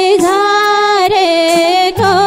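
A woman singing a Nepali folk song into a microphone, with ornamented, wavering phrases and a long held note about a third of a second in. Light accompaniment with soft, evenly spaced percussion ticks sits under the voice.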